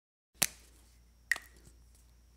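Two sharp clicks about a second apart, the first about half a second in, followed by a fainter third, over a faint steady low hum.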